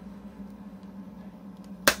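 A single sharp snap near the end as the cardboard J-card slipcover comes free of the metal steelbook case. Before it there is only faint handling over a steady low hum.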